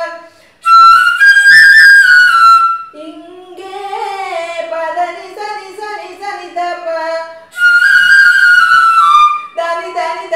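Six-pitch eight-hole Carnatic bamboo flute playing two short melodic phrases, stepping up and then sliding down through held notes. Between and after them a woman's voice sings the same line more quietly and lower.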